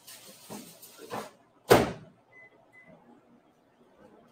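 Rustling and light knocks at a refrigerator, then one loud thud of its door shutting just under two seconds in, followed by two short high beeps.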